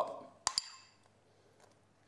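A single sharp clink with a brief high ring, a kitchen utensil striking a dish, about half a second in; then quiet room tone.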